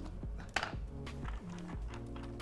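Background music with a few sharp knife strokes on a wooden chopping board as a red chilli is cut, the sharpest about half a second in.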